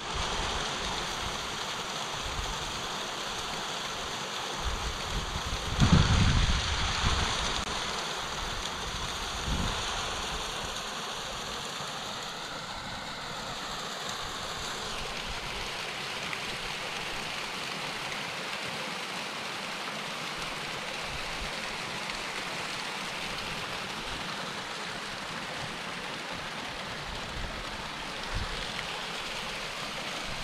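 Small mountain stream running steadily down a rocky cascade. A brief low rumble comes about six seconds in.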